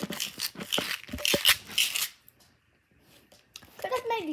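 Handling noise: a rapid run of clicks and rustles as hands grab at and fumble with the phone for about two seconds, then a short silence.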